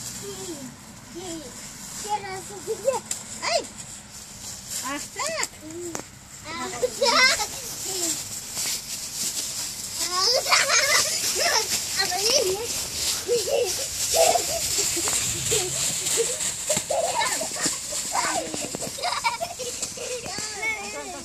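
Young children's voices at play in the snow: short calls, shouts and squeals, scattered through the whole stretch.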